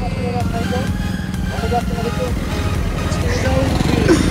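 Background music and voices over road traffic passing close by: an auto-rickshaw's small engine, then a car near the end.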